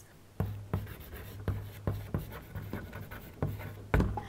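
Chalk writing on a chalkboard: a run of short taps and scratches as letters are written, starting about half a second in, over a low steady hum.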